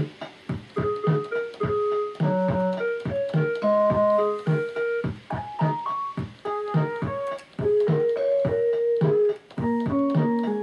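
Casio SK-8 sampling keyboard played by hand in its plain, unmodified preset sounds: a quick melody of short notes over a regular percussive beat.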